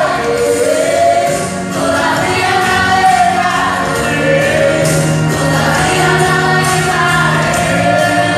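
Children singing a Christian praise song into handheld microphones, a boy leading with two girls on backing vocals, in long held notes.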